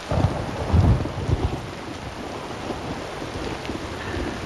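Heavy rain pouring down, with a low rumble of thunder that swells within the first second and a half and then fades back into steady rain.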